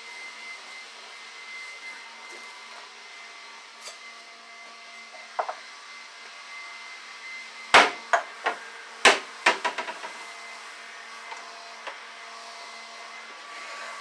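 A few sharp knocks and clatters of things being handled at a kitchen counter and cabinet, most of them bunched together a little past the middle, over a steady background hum.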